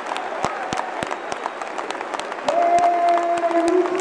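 Football crowd clapping and cheering a goal, with sharp hand claps close by; about two and a half seconds in a long held voice rises over the applause.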